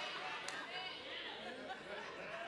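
A congregation's overlapping chatter in a hall: many voices talking at once in a low murmur, with no single voice leading.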